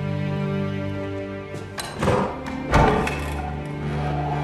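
Sentimental orchestral string score in minor chords, sustained and slow. Two loud thuds land about two seconds in and again just before three seconds.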